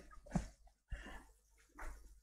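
A man's soft laughter: three short, faint chuckles.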